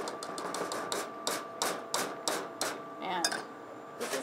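Wire whisk clicking against a metal saucepan while a thick roux and tomato-juice mixture is whisked smooth to work out lumps: a run of sharp metallic taps, about three a second, that stops after a couple of seconds.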